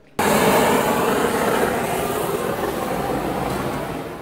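A cookstove burner flame running with a loud, steady rushing noise that cuts in suddenly.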